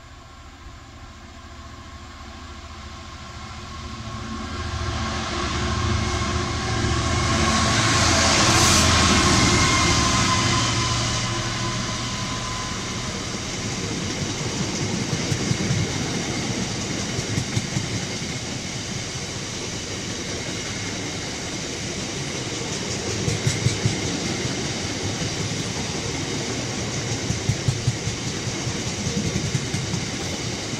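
A Class 66 diesel freight locomotive approaches and runs past, its two-stroke diesel engine growing louder to a peak about eight to ten seconds in. A long rake of open box wagons follows, rolling by with a steady rumble and clusters of wheel clicks.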